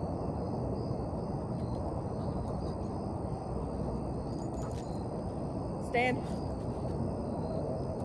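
Steady evening outdoor ambience: an even hiss with a high, unbroken drone of insects.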